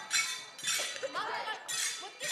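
Short metallic jingles and clinks, three or four brief bursts, during a lull in the dance music, with a voice calling out in between.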